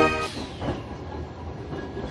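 Street tram running past on its rails, a steady noise of wheels and running gear. A burst of music cuts off just at the start.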